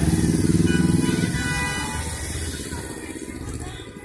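Motorcycle engines passing close by and fading into the distance.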